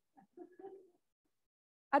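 A pause that is nearly silent: a few faint, short murmurs of a voice in the first second, then quiet until a woman's voice starts speaking at the very end.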